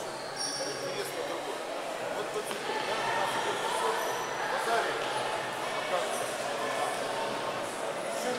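Indistinct, echoing chatter of people in a large sports hall, with no single voice standing out.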